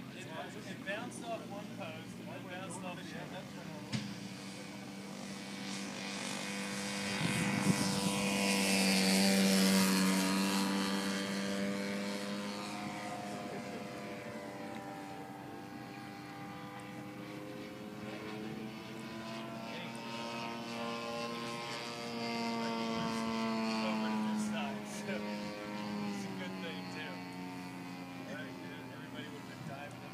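Gas engine and propeller of a radio-controlled Pitts Special model aerobatic plane droning in flight. It grows loud as the plane passes close about eight to ten seconds in, the pitch sliding down as it goes by, then swells again on a second pass near the 23-second mark before fading.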